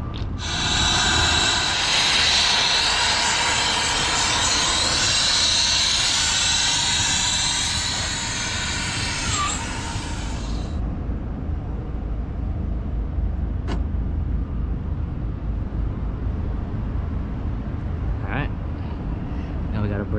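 Brazing torch flame hissing loudly and evenly for about ten seconds while copper refrigerant line joints are brazed, then cutting off suddenly, leaving a steady low rumble.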